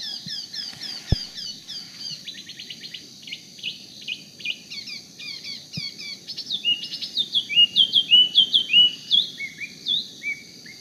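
Spot-throated babbler singing: a fast, unbroken run of short down-slurred whistled notes mixed with brief rattling trills, loudest near the end. A single low bump about a second in.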